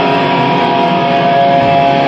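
A live band playing loud, with electric guitars holding long sustained chords.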